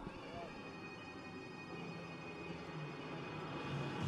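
Faint background voices over quiet room tone, with a faint steady high-pitched tone through most of it.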